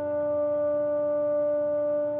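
Small chamber orchestra of woodwinds and strings holding one long, steady chord.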